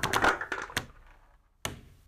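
Popcorn popping sound effect: a quick run of pops and taps that thins out and fades, then two single sharp pops near the end.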